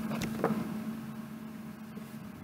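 Quiet room tone with a steady low electrical hum, and a couple of faint clicks and a light rustle early on as a glossy paper card is handled.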